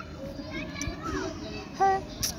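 Faint background voices of children, with a short, louder voice sound just before the end.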